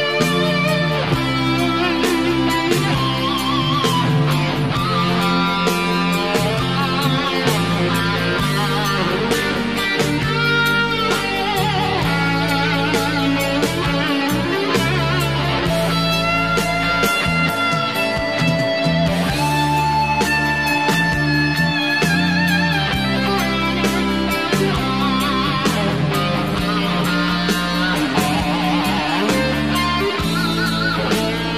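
Instrumental break in a Malaysian slow rock song: a lead electric guitar plays a melodic solo with bent, wavering notes over the band's steady backing.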